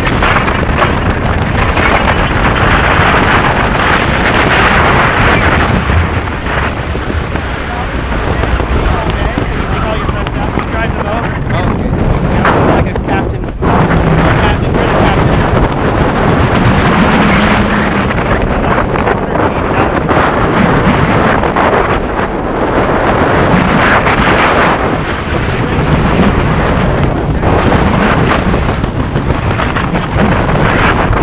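Loud, steady wind rushing over the microphone of a hand-held camera during a tandem parachute descent under canopy, briefly easing about thirteen seconds in.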